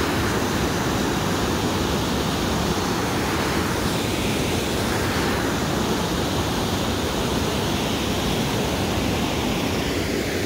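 A swollen river rushing over a weir: steady, loud churning white water with no let-up.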